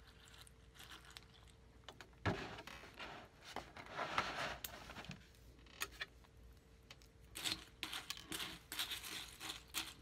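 Milk poured from a plastic jug into a glass bowl of Fruity Pebbles cereal, faint at first, then a knock about two seconds in as the jug is set down, followed by a few seconds of rustling. Near the end, quick crinkling and clicking as a paper napkin is handled beside the bowl.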